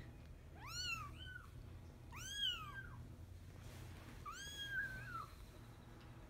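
A young Bengal kitten mewing: three high, thin mews, each rising then falling in pitch, the last one the longest.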